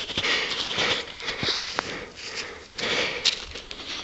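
A man sniffing several times at close range, smelling the inside of a homemade pipe gun for burnt powder to check that it fired.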